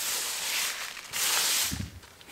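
Loose old potting soil rustling on a plastic tarp as it is shaken out and brushed about by hand: two hissing rustles, then a soft thud near the end.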